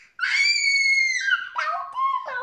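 A young pet parrot giving one long, loud, high-pitched squawk that drops slightly in pitch at the end, followed near the end by a shorter, lower call.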